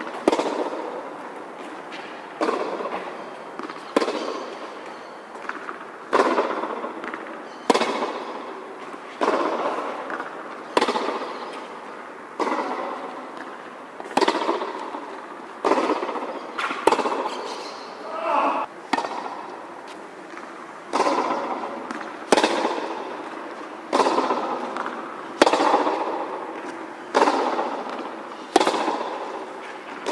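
Tennis balls struck by rackets in a baseline rally, a sharp hit about every second and a half. Each hit rings on in the echo of the covered court.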